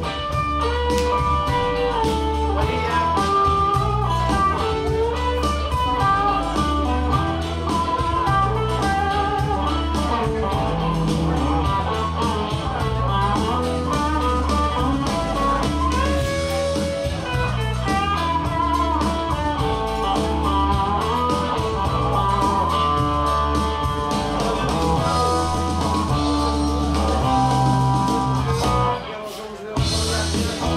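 Electric guitar playing blues-rock lead lines over a bass and drum backing, with a brief drop in the music about a second before the end.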